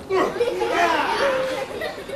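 Several voices, seemingly children's, talking and calling out over one another in a lively chatter.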